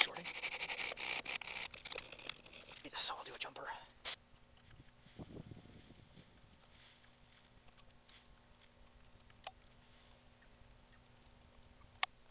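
Metal file scraping a lead-acid battery terminal clean: rapid, rough scratching for about the first four seconds. After that it falls much quieter, with only a few faint ticks while the terminal is soldered.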